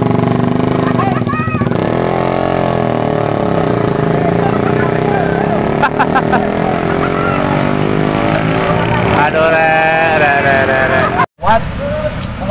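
Small motorcycle engines running and revving while the loaded bikes are pushed up a steep hill, the pitch rising and falling, with people shouting over them. The sound drops out briefly shortly before the end.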